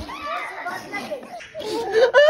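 Voices of a small child and others babbling and talking over each other.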